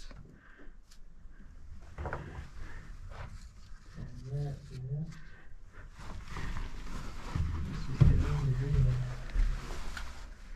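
Shuffling and scraping of someone moving through a narrow mine passage over dirt and rock, louder in the second half, with short low voice sounds about four seconds in and again near the end.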